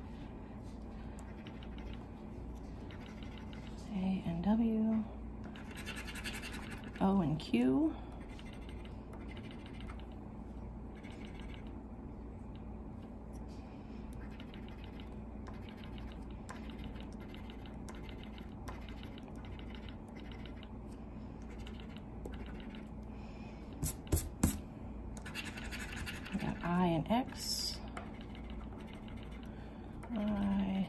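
A coin scraping the silver latex off a scratch-off lottery ticket in many short, repeated strokes, louder in spells about six seconds in and again near the end, with a few sharp clicks just before. A person murmurs briefly a few times.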